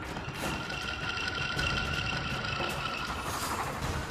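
Dramatic background score: a held synth chord of steady tones over a low rumble, fading a little before the end.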